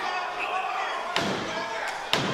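A sharp heavy smack on the wrestling ring mat about a second in, typical of a wrestler pounding the canvas with his hand in frustration, with a lighter knock just before the end. Crowd voices murmur throughout.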